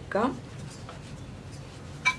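Faint rubbing and scraping of hands pressing and shaping a log of vettu cake dough into a rectangle on a floured stone board.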